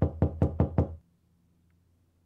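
Five quick knocks on a door in about a second, then they stop.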